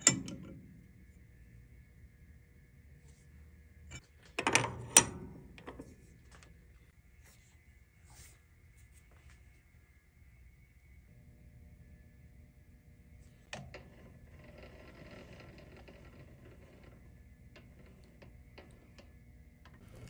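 Quiet lathe-side work on tooling: a sharp metal clank about five seconds in and a single click later, as holders are handled on a lathe's quick-change tool post. A faint steady hum sits underneath, with a light scraping noise near the end.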